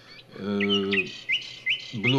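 A small bird chirping: a quick series of short, rising chirps, about five in two seconds, over a person's drawn-out hesitation sound near the start.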